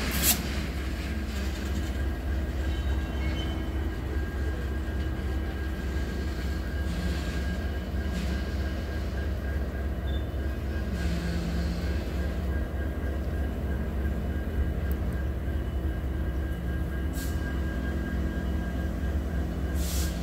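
Union Pacific SD40N diesel freight locomotives running with a steady low rumble and hum as the train creeps slowly along, a tank car rolling past.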